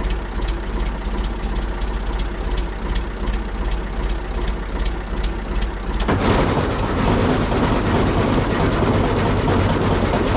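Tractor engine idling with even firing pulses. About six seconds in, the Hesston PT-7 haybine is set running off the tractor's PTO, and its sickle bar, reel and rolls add a much louder, steady mechanical clatter.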